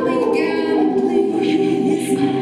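A woman sings into a microphone over several held voices sounding in harmony, like a small vocal choir.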